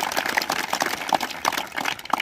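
A large crowd of people applauding: many hands clapping together in a dense, irregular patter.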